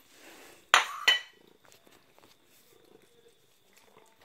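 A plate set down on a tiled floor: two sharp clinks close together about a second in.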